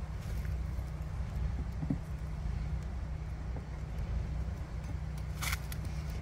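Honeybees humming around an open hive over a steady low rumble, with a short sharp click about five and a half seconds in as the hive tool works the plastic frames.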